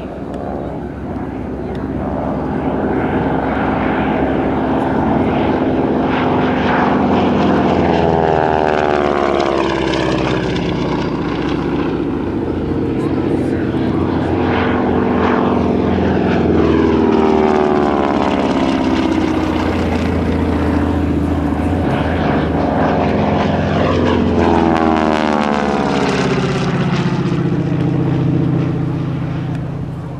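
Radial engines of North American T-6 Texan/Harvard trainers, Pratt & Whitney R-1340 Wasps, droning loudly as the aircraft fly passes overhead. The engine pitch sweeps down as each one goes by, about three times.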